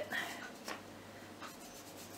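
Faint rubbing of a sponge-tipped shoe polish applicator being wiped along a wooden stick to stain it, with a couple of soft clicks.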